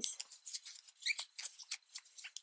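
Quick, irregular scratching and rustling of thick yarn sliding over a crochet hook as double crochet stitches are worked into a magic ring.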